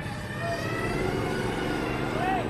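A motor vehicle's engine running close by, a steady low rumble, over the general noise of a busy street.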